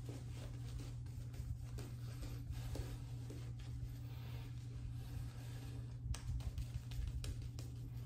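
Shaving brush working lather over the face, a soft, faint scratchy brushing, with a steady low hum underneath.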